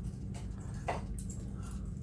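Steady low background hum with a few faint, short soft sounds, one about a second in.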